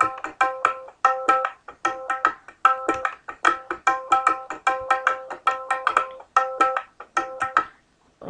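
Sampled tabla fill loops at 75 BPM are auditioned from Reason's Factory Sound Bank: a quick, busy run of sharp tabla strokes with ringing pitched tones. One fill loop follows another about halfway through, and the playing stops just before the end.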